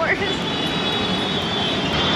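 Busy street traffic: a steady wash of motorbike and auto-rickshaw engines, with a thin high whine coming in just after the start.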